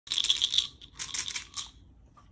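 Pills rattling in a small plastic prescription bottle, shaken in two short bursts, the second starting about a second in.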